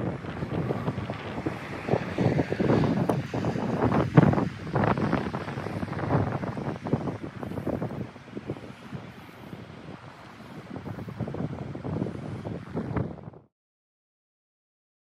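Wind buffeting an outdoor microphone in uneven gusts, then cutting off abruptly near the end.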